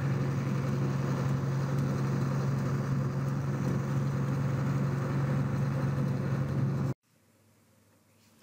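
Tractor engine running at a steady pace, heard as a constant low hum while the tractor steers itself along a line. The sound cuts off abruptly about seven seconds in.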